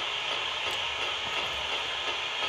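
Ghost box (spirit box) scanning the radio band, giving a steady hiss of radio static.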